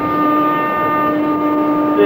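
Live Carnatic classical music in Keeravani raga: one note held steadily for nearly two seconds.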